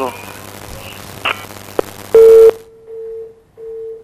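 A steady telephone-line beep, like a dial or busy tone: first very loud and short, about two seconds in, then the same tone quieter, broken once by a brief gap.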